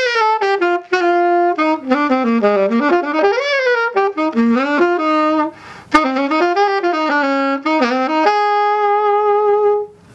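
Jupiter 769GL alto saxophone played solo, a jazzy improvised line of running and bending notes with short breaths, ending on a long held note that stops just before the end.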